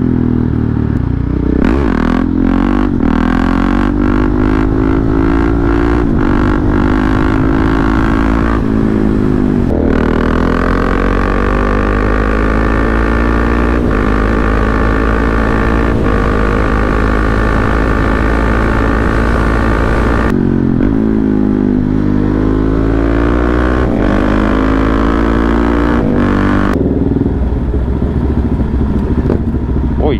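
KTM Duke 690 single-cylinder engine, fitted with an Akrapovic exhaust and a GPR decat link pipe, pulling hard through the gears under way. Its pitch climbs steadily and falls back at each upshift, several times over.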